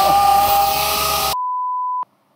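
Handheld angle grinder running at full speed with a loud, steady whine and hiss. About a second and a half in it is cut off abruptly by a steady electronic beep tone dubbed over the picture.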